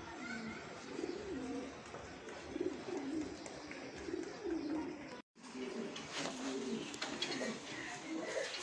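Domestic fancy pigeons cooing, a string of repeated low, rolling coos. There is a brief total dropout about five seconds in.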